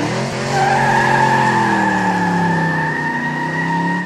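Sound effect for an animated channel logo: a loud sustained sweep of low pitched tones that glide downward slightly, joined about half a second in by two steady high tones, the whole fading away at the end.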